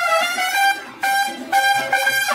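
Mariachi band music with trumpets leading, playing a phrase of a few held notes.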